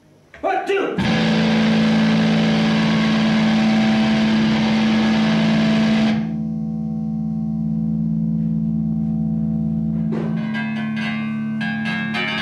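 Electric guitar played through distortion. After a few picked notes, a loud distorted chord rings for about five seconds, then drops to a quieter held, droning note. Fresh picked notes start about ten seconds in.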